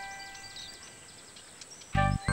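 A quiet pause in a cartoon soundtrack: a few held background-music tones fade out, with a few faint high chirps in the first second.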